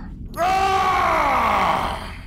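A person's long pained cry, starting about a third of a second in and falling steadily in pitch for about a second and a half.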